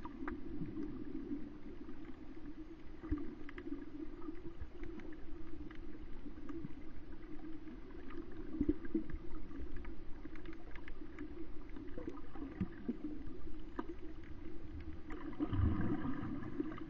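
Underwater sound on a coral reef, heard with the microphone under water: a steady muffled hum with scattered small clicks and crackles, and a louder low rumble near the end.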